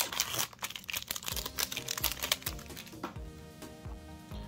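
Foil booster pack wrapper crinkling and rustling as it is opened and handled, loudest in the first second. Background music with a steady beat runs beneath it.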